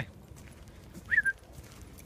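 Faint crunching footsteps on a gravel path, and about a second in, one short high whine from a dog that rises and then holds.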